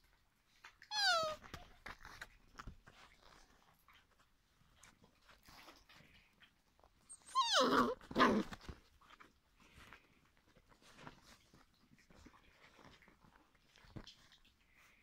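A young puppy whining: a short high cry falling in pitch about a second in, then a longer, louder cry that falls into lower whines about seven to eight seconds in, with soft rustling between.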